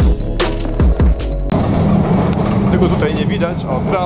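Background music with a steady drum beat for about a second and a half, then a cut to the low rumble of a moving tram heard from inside the passenger cabin. A voice comes in over the rumble after about another second.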